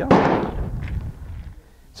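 A single sharp bang with a short echoing tail, like a gunshot, just after the start. Low rumble follows until about a second and a half in.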